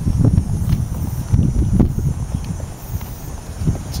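Wind buffeting the camera's microphone, a loud, uneven low rumble that comes and goes in gusts, with a few light footsteps on a paved path.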